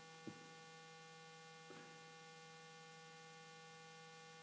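Near silence with a steady electrical mains hum and a faint click shortly after the start.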